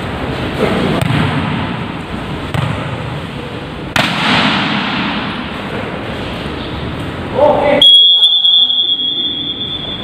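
Indoor volleyball practice in a large echoing hall: players' voices and a sharp ball strike about four seconds in. About two seconds from the end, a single steady high-pitched tone like a whistle starts and holds for about two seconds, while the rest of the sound drops away.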